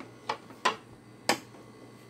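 Three short, sharp clicks, unevenly spaced over about a second, the second and third louder than the first.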